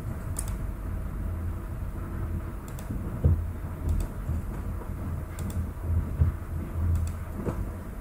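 A few faint computer-mouse clicks, a second or more apart, over a low steady background rumble.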